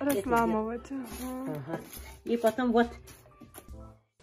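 A voice in long, drawn-out held notes over music, like singing.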